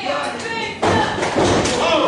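Audience members shouting, with a sudden heavy thud on the wrestling ring's canvas a little under a second in.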